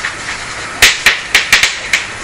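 A series of sharp, irregular taps: low hiss for nearly a second, then about six quick taps.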